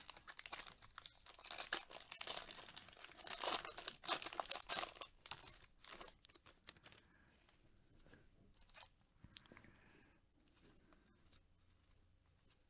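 Foil wrapper of a trading-card pack being torn open and crinkled, a dense crackling that runs about six seconds and is loudest near the middle. After that come softer rustles as the stack of cards slides out of the wrapper.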